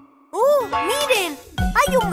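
Children's cartoon song: after a brief pause, a child-like voice gives two rising-and-falling exclamations, then the bouncy backing music and singing come back in a little past halfway.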